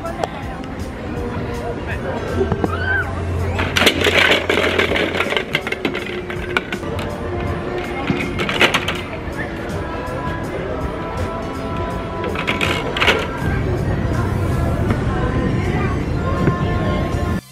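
Music plays throughout, with a short laugh at the very start. Three brief clatters of hard plastic come about four, eight and a half and thirteen seconds in: discs dropping into a giant Connect Four frame.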